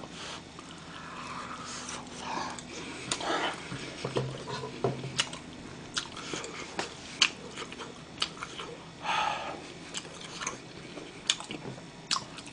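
A person chewing a mouthful of galbi-filled dumpling close to the microphone: quiet wet chewing with scattered sharp mouth clicks and smacks.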